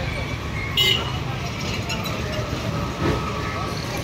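Steady street traffic rumble under people talking, with a brief sharp high-pitched sound about a second in.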